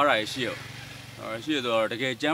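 A man speaking Burmese into a close microphone, with a short rush of background noise in a pause about half a second in.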